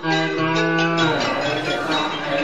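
Buddhist monks chanting in unison in a low voice, holding one note for about a second before moving to another pitch.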